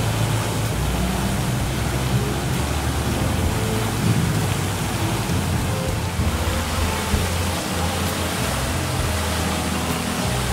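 Fountain jets spraying and splashing into a pool, a steady rushing hiss, with a low rumble underneath.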